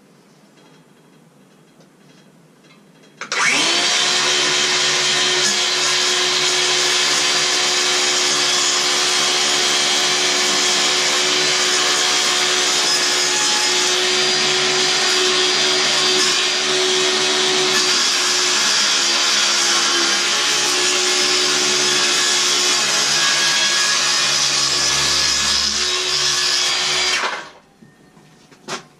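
Cordless power saw running steadily as it cuts through a sheet board, starting about three seconds in and stopping about a second before the end.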